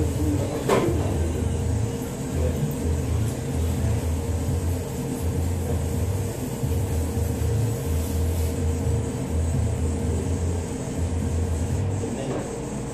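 Hand wet sanding on a 1974 Chevy C10's hood, heard as an uneven low rumble of strokes that comes and goes, over a steady hum.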